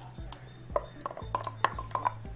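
A wooden spoon knocking and scraping ground coconut-and-spice paste out of its container into a cooking pot: a run of light, irregular taps, several with a short ring, over a low steady hum.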